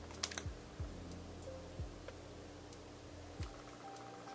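A few faint, scattered clicks and taps of small cosmetic containers being handled and set down, the sharpest about a quarter second in, then single ones spread over the next few seconds.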